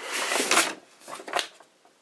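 Paper and craft supplies rustling as they are rummaged through for a thinner sheet. The rustle lasts about half a second, and a single light tap follows about a second and a half in.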